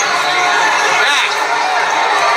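Crowd of many people talking and shouting at once in a packed basketball gym, a continuous din of overlapping voices.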